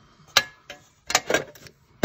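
A few clicks and light knocks as craft supplies, a metal paint tin among them, are handled and set down on a tabletop. One knock about half a second in has a short metallic ring after it.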